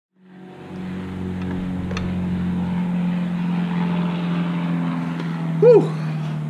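A steady low hum with a hiss over it fades in at the start and holds evenly. Near the end a man shouts "woo!"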